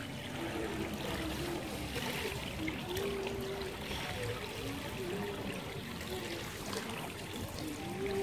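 Swimming-pool water lapping and trickling around a child wading, a steady wash of noise, with a faint wavering tone in the background.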